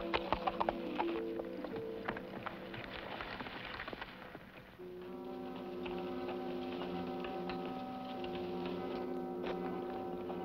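Horses' hooves clip-clopping on a dirt trail under orchestral background music. The music fades about four and a half seconds in, and a new cue of long held notes begins, with only a few hoof clicks left.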